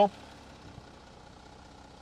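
Volkswagen Touareg engine idling with a low, steady hum, heard through the open driver's window.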